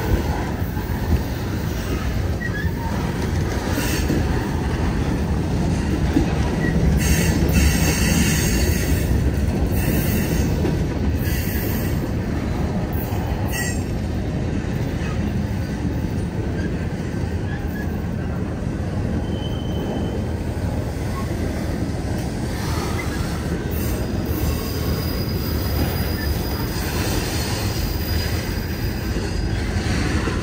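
Freight cars of a manifest train rolling past at close range: a steady rumble of steel wheels on rail with a run of sharp clanks about a third of the way through. Thin wheel squeals come in briefly around two-thirds of the way in and for longer near the end.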